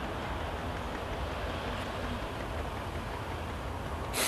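Steady background noise, a low rumble under an even hiss, with no distinct events.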